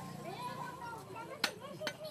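Two strikes of a meat cleaver chopping through goat meat onto a wooden stump chopping block, about a second and a half in, the first louder than the second.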